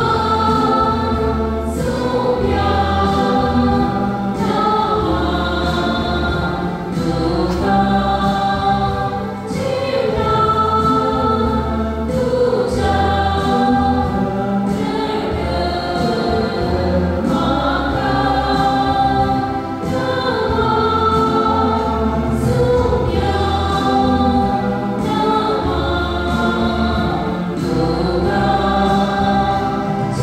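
A choir singing a slow hymn with sustained instrumental accompaniment and a deep, steady bass line, the notes held and changing every second or two.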